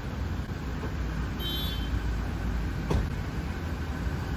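Steady low motor-vehicle rumble, with a short high chirp about one and a half seconds in and a single sharp click near three seconds.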